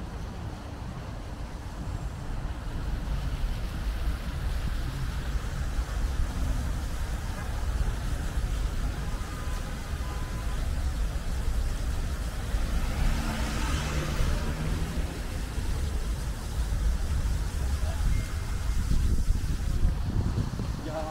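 Outdoor street ambience: a steady hum of road traffic, with wind rumbling on the microphone. A louder swell of traffic noise comes about two-thirds of the way through.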